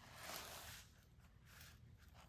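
Near silence: faint room tone with a little soft rustling.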